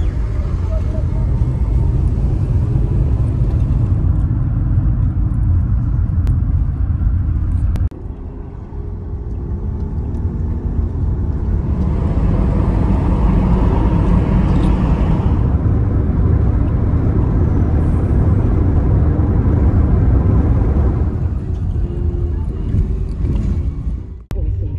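Road and engine rumble of a moving car, heard from inside the cabin while driving in traffic. The rumble drops briefly about a third of the way in, then builds to its loudest in the middle and eases off near the end.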